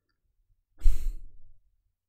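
A man sighs once into a close microphone, a single breath out about a second in that fades over half a second.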